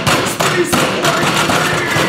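Fists pounding rapidly and repeatedly on a table top in an angry tantrum, loud thumps one after another.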